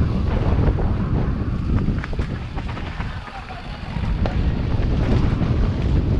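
Wind buffeting an action camera's microphone over the rumble and rattle of a downhill mountain bike riding a dirt trail, with sharp clacks from the bike. The noise drops for a moment about halfway through, then picks up again.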